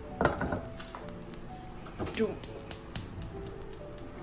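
A stainless saucepan set down on a gas hob's grate with a knock, then the burner's spark igniter clicking rapidly, about five clicks a second for a second and a half, as the gas is lit.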